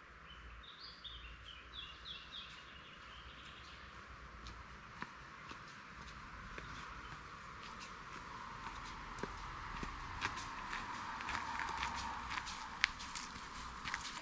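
Footsteps on a gravel path, growing louder as the walker comes closer, with sharp crunches near the end. A bird chirps a few times in the first two seconds.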